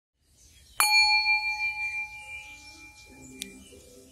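A single bright chime, like a small bell, struck about a second in and left to ring out, fading over about two seconds. Near the end, soft background music begins.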